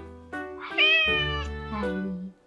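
A domestic cat meows once: a single call of under a second, over background music.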